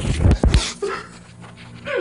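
Handling noise of a phone being moved: a few heavy thumps and knocks in the first half-second. Then it goes quieter, with two short faint whines, one about a second in and one at the end.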